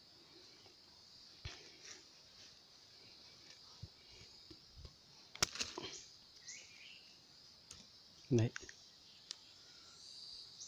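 Steady high buzz of forest insects, with scattered light clicks and rustles as a freshly dug wild yam tuber and the leaf litter around it are handled; a short cluster of clicks about five and a half seconds in is the loudest.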